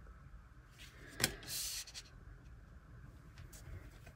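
An oracle card set down on a tabletop with a sharp tap about a second in, then slid briefly across the surface with a short rub.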